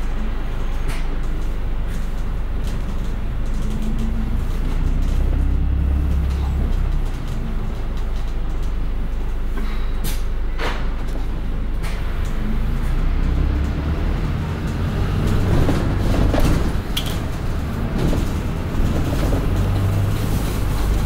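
Double-decker bus heard from its top deck, its engine and road noise running steadily as it drives through city traffic, the engine note drifting up and down with a few short sharp clicks.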